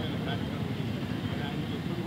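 A man's voice speaking over a steady low rumble of outdoor background noise.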